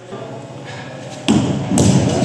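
Metal clunks from the tailstock of a Smithy Granite 3-in-1 lathe-mill combo being handled on the lathe bed: two sharp knocks a little under half a second apart, the first about a second and a quarter in, with rattling between and after them.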